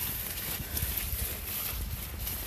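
Low, steady rumble of wind on a phone microphone, with faint rustling and brushing of corn leaves as the camera moves through the plants.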